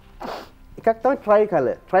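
A short breathy hiss close to the microphone, lasting about half a second, then a person speaking Sinhala.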